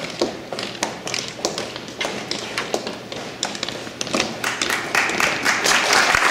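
Boots of a file of marching men tapping and thudding on a hard floor in irregular footfalls. Applause begins to build about four and a half seconds in.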